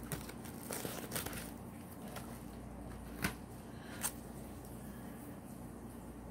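Rustling and crinkling of a paper mailer envelope and a plastic card holder being handled as a trading card is taken out. Several small crackles come in the first second or so, then quieter handling with two sharp clicks about three and four seconds in.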